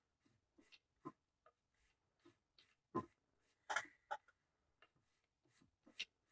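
Faint, sparse scraping strokes of a thread burnishing tool rubbed over rod-wrapping thread, packing the fresh wraps tight. The clearest strokes come about three seconds in and again just before four seconds.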